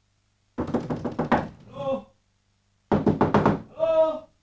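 Rapid knocking on a door in two quick bursts, each burst followed by a short call from a raised voice.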